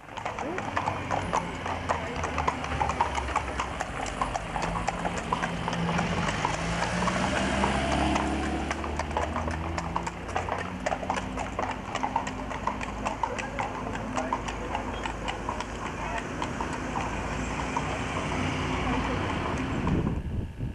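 Horse's hooves clip-clopping steadily on a paved road as it pulls a cart with spoked wheels, over a low steady rumble.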